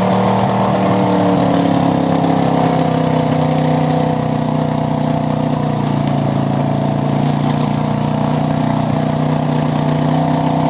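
Engine of a Jeep-style 4x4 mud-bogger running under load as it churns slowly through a deep mud pit. The pitch wavers over the first few seconds, then holds steady while the level eases slightly.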